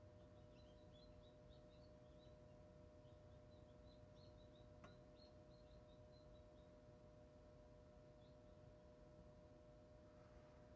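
Faint chick peeping, a run of short high chirps over the first six or seven seconds, over the steady hum of the Hova-Bator incubator's fan motor. A single click about five seconds in.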